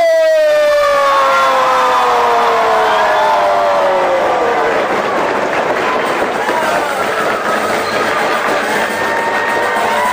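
One voice holds a long drawn-out shout that slowly falls in pitch over about five seconds, as in a ring announcer's stretched-out name call. A crowd yells and cheers under it, and the cheering carries on after the shout ends.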